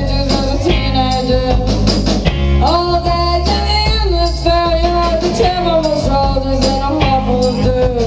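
A live rock band playing a song: electric guitar, electric bass and drums, with a woman singing the lead vocal in long, wavering held notes.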